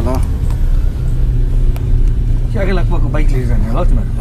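Car engine and road rumble heard inside the cabin of a Ford car on the move, with a steady engine hum setting in about a second in. Voices talk briefly near the end.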